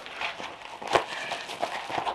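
Corrugated cardboard packing and plastic wrap rustling and crinkling as a potted plant is handled in its packaging, with one sharp tap about a second in.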